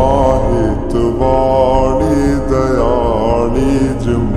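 Gujarati song: a singer's voice holding long, wavering, ornamented notes without clear words over a steady music accompaniment.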